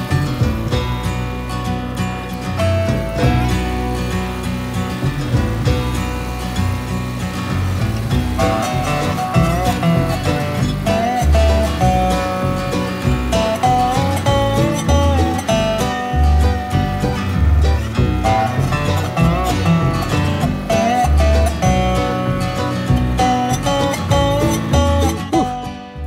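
Background music: a melody over a steady bass pulse.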